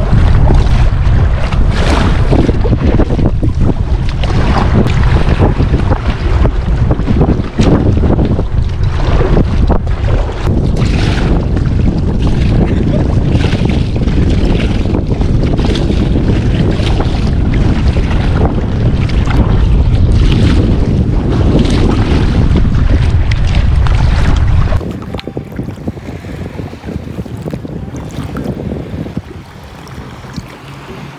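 Strong wind buffeting the microphone over choppy lake water splashing around an inflatable kayak as it is paddled, with irregular splashes. About 25 seconds in, the sound drops suddenly to a much quieter wash of water.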